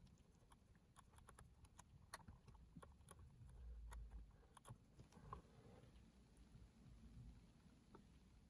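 Near silence, with a few faint scattered ticks and a soft rub from an alcohol-dampened cotton swab being scrubbed around a cassette deck's brass drive pulley.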